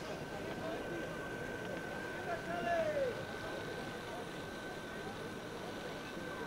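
Steady hiss of an old broadcast soundtrack with a constant high-pitched tone running through it, and a faint distant voice calling out once, falling in pitch, about two and a half seconds in.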